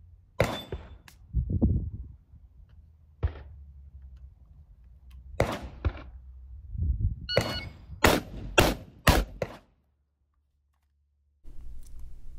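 Shotgun fired in a fast string of shots about half a second apart, starting about a second after a short electronic beep like a shot timer's. A few single sharp bangs come earlier, about half a second, three and five seconds in.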